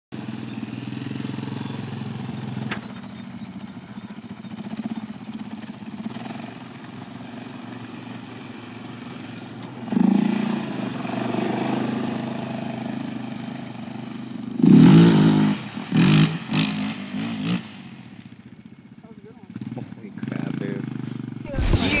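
Yamaha Raptor 700R sport quad's single-cylinder engine running as it is ridden, revving up about halfway through and loudest in a run of sharp revs a few seconds later.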